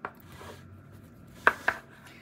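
A short click, then faint rustling of a USB-B cable being handled in the hand.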